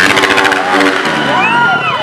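Small dirt bike's engine revving hard as it launches off a stunt ramp; its pitch falls while the bike is in the air, then rises and falls once more in a short rev near the end as the bike comes down.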